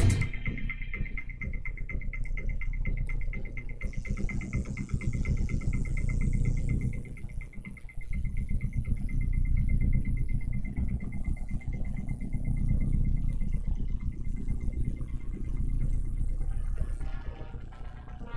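Electronic dance music from a DJ mix with its treble filtered out, leaving a muffled, bass-heavy groove and a faint fast-repeating high tick. Fuller sound starts to return near the end as the DJ works the mixer's EQ and filter.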